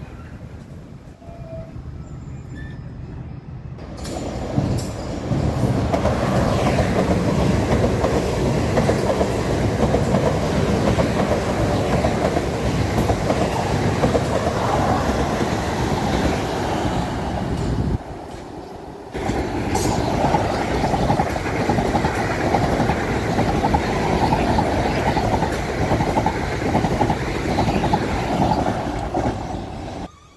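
South Western Railway electric multiple unit running past along the platform, its wheels and running gear loud from about four seconds in, with a brief lull about eighteen seconds in.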